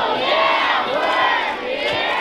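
A group of children shouting and cheering together, many high voices at once.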